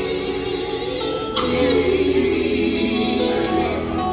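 Live gospel music: voices singing long held notes over a band of electric bass, electric guitar, drums and keyboards.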